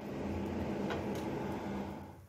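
Butter sizzling on a hot tawa as halved pav buns toast in it, over a steady low hum, with a faint tap about a second in as another bun is set down. The sound fades near the end.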